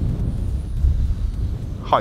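Strong gusty wind buffeting the microphone: a low, uneven rumble that swells and dips. A man's brief exclamation comes at the very end.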